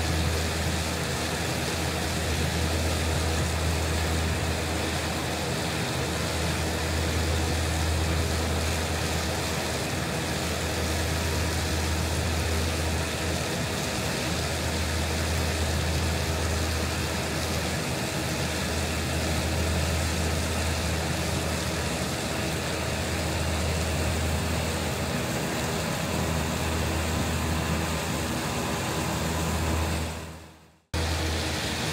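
Case IH Optum 300 tractor running steadily under load, driving a set of Krone triple disc mowers as it cuts alfalfa. A low, even drone with a layer of steady higher mechanical hum from the mowers.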